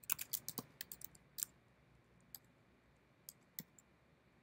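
Typing on a computer keyboard: a quick run of keystrokes in the first second and a half, then a few scattered single key presses.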